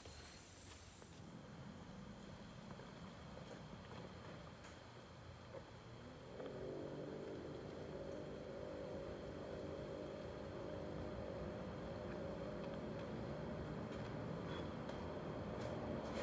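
A machine starts humming abruptly about six seconds in and runs steadily after that, a low drone made of several evenly spaced tones. Before it there is only faint background noise with a few small clicks.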